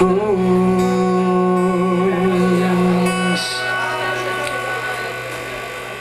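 A man's singing voice holds one long note with a slight vibrato over acoustic guitar and bass, stopping a little over three seconds in. The guitar chord then rings on and slowly fades.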